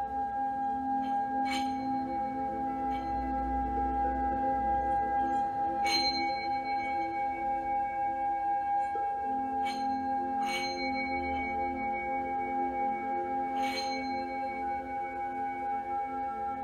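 Handheld metal singing bowl ringing with a steady, wavering tone, struck again with a mallet about every four seconds so the ring keeps sounding.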